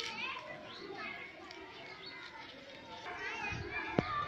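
Many children chattering and calling out to each other as they play.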